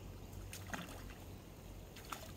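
A small hooked tilapia splashing at the pond surface as it is pulled up on the line, with two brief splashes about half a second and three-quarters of a second in.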